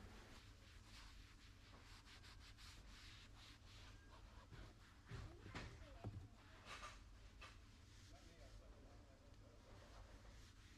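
Faint rubbing of a foam pad being wiped over a leather/vinyl car door panel with foamy leather cleaner, with a few slightly louder soft handling touches around the middle; otherwise near silence.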